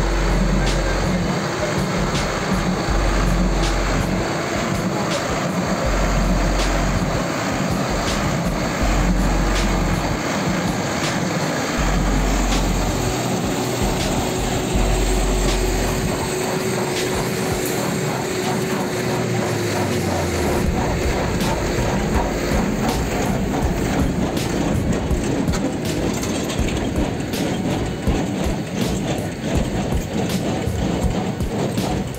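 A tractor engine runs under load while a Massey Ferguson small square baler works behind it, its plunger clacking regularly as it packs rice straw into bales.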